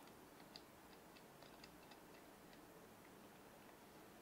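Near silence with faint, irregular small metallic ticks, mostly in the first two and a half seconds: a GeekVape Tsunami 24 RDA being twisted off a box mod's threaded connector.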